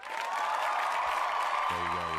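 Recorded crowd applause played as a sound effect, cutting in abruptly out of dead silence and running at a steady level. A man's voice comes in over it near the end.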